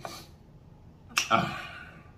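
A man's brief vocal sound a little over a second in, with a sudden start and a short voiced tail; quiet before it.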